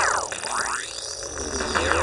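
Synthesised sound-effect sweeps for an animated logo: layered tones gliding down and back up again and again, about once a second, over a low rumble.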